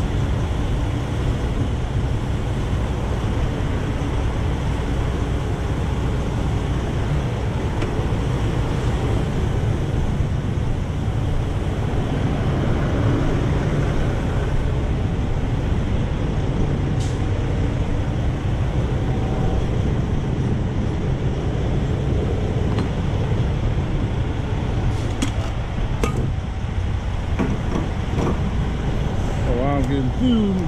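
Steady low rumble of idling diesel semi-truck engines, with a few sharp clicks near the end.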